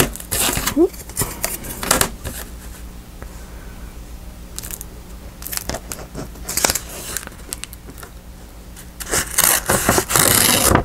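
Paper and a plastic ruler being handled on a cutting mat: scattered light taps, slides and rustles. Near the end comes a rougher, denser scraping as a bone folder is drawn along the ruler edge to score the paper.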